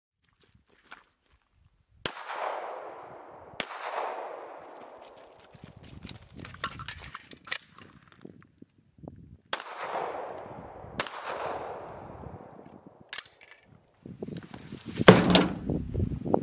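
Handgun shots fired outdoors, five in all: two pairs about a second and a half apart and a single one, each followed by a long echo. Near the end comes a loud cluster of knocks and rattles, the loudest sound here.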